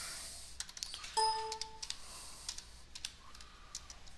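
Computer keyboard typing: a few scattered keystroke clicks as a stock ticker symbol is entered. A short, steady electronic beep of about two-thirds of a second sounds a little over a second in.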